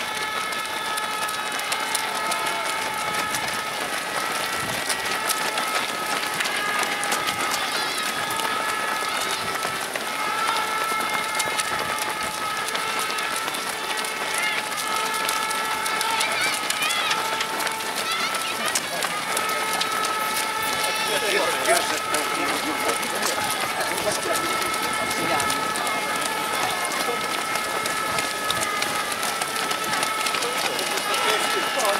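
Footsteps of many runners slapping on wet asphalt as a big pack passes, with indistinct voices mixed in. A steady high tone runs underneath throughout.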